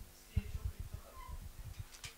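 Faint microphone handling noise: a string of soft, irregular low thumps and rustles from a live microphone, with faint voices in the background.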